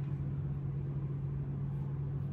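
A steady low hum, unchanging throughout.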